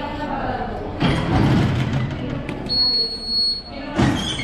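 Station ticket barrier beeping: one steady high-pitched electronic beep lasting about a second near the end, after a thud about a second in as people pass through the gates.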